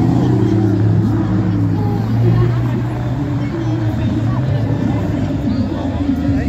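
Aston Martin DB9's V12 engine running with a steady low drone as the car moves off slowly past the crowd, fading after about four seconds as it pulls away. Crowd chatter underneath.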